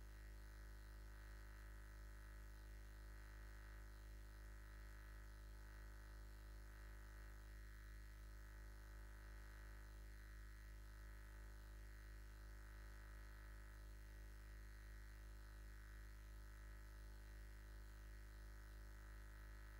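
Near silence with a steady low hum.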